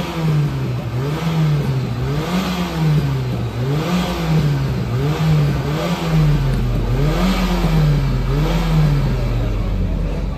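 Volkswagen Golf Mk2 engine revved hard and dropped back again and again, about once a second, loud through its exhaust. It is being revved for a sound-level meter, which reads 105.7 dB.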